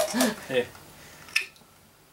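A man's voice saying "Allez" amid laughter, followed by a single sharp click about a second and a half in.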